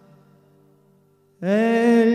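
Solo acoustic performance: the last acoustic guitar chord fades almost to silence, then about a second and a half in a male voice comes in loud on a long held sung note that slides up slightly into pitch.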